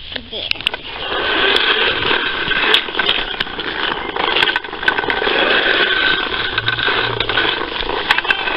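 Fisher-Price toy lawnmower pushed along, its plastic mechanism whirring and rattling steadily with scattered clicks, starting about a second in.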